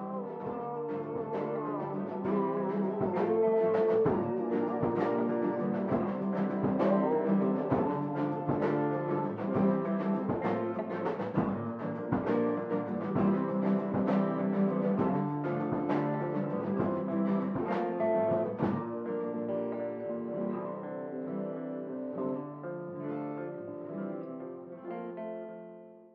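Music with a steady beat and layered sustained notes, fading out at the end.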